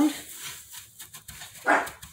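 Dry, crackly rustling of crushed cornflake crumbs as hands mix them in a glass baking dish. Near the end comes one short, louder sound.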